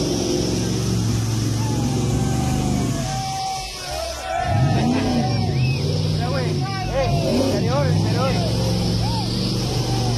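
Jeep Cherokee XJ engine revving hard while the Jeep is driven through deep mud, its revs rising and falling again and again. Voices of the watching crowd shout over it.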